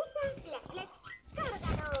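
Faint whimpering whines of a small dog: several short high cries that rise and fall.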